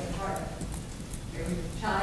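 Indistinct speech in the room, too low and unclear to make out, with a few light clicks or taps.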